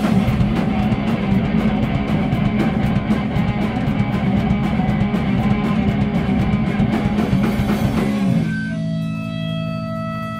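Punk band playing loud and fast on electric guitar, bass and drum kit. About eight seconds in the band stops together, leaving a few steady ringing tones from the guitars and amps.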